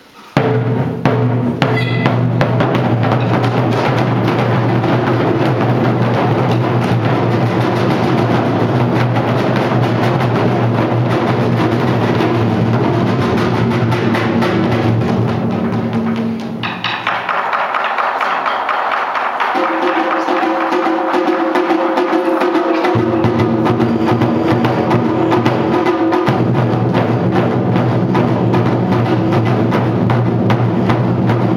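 Taiko ensemble striking barrel-shaped nagado-daiko drums with wooden bachi sticks, loud and continuous after starting about half a second in. Past the middle the deep drum tone drops away for several seconds, then comes back.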